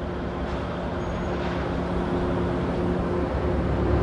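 Steady low machinery drone with a constant hum, growing slowly louder.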